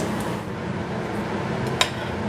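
Kitchen sounds of a metal spatula handling fried tofu, with one sharp clink of the spatula against the dishware near the end, over steady background noise.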